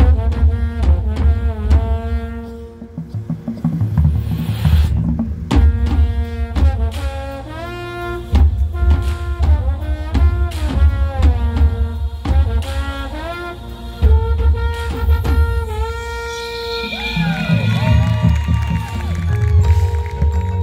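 High school marching band playing its field show: brass and woodwinds over a heavy, pulsing low bass.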